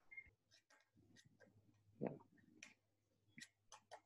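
Near silence: room tone with a few faint scattered clicks and one soft knock about two seconds in.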